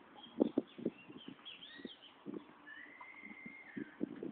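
Tennis ball knocks from racket hits and bounces on a court, a quick cluster in the first second and scattered ones after. High bird chirps sound over them, with one long whistled note near the end.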